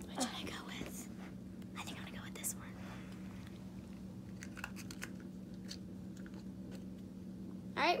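Soft rustling and handling noises close to the phone's microphone, with a few light clicks, over a steady low hum.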